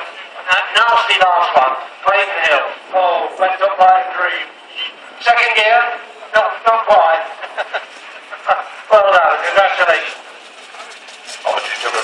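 A man talking almost without a break; the words are indistinct.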